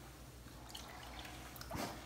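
Faint dripping and sloshing of water as a gloved hand gropes under the surface of a full bathtub for the drain, with a small splash near the end.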